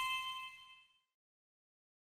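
The fading tail of a bright, bell-like chime from a logo sting, its several ringing tones dying away in about the first half second.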